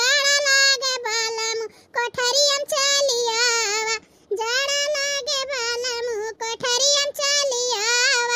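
A very high-pitched cartoon voice singing in held, gliding phrases, with two short breaks, about two seconds in and about four seconds in.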